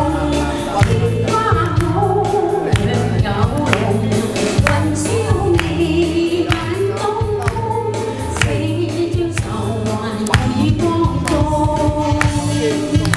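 A woman sings a Chinese pop song live into a handheld microphone, amplified through the hall's speakers over a backing track with a bass line and a steady beat.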